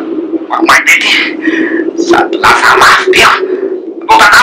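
Voices speaking in a Malagasy radio drama, over a steady low hum.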